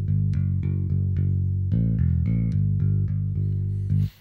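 Ample Bass P, a sampled electric bass plugin, playing a plain bass line from the piano roll with no key-switched articulations: a steady run of plucked notes, about three or four a second. The playback stops suddenly at the very end.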